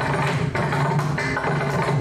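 Mridangam being played, a run of sharp strokes over the drum's steady low ringing tone.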